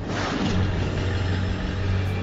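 Car engine running with a steady low drone, part of a logo sound effect.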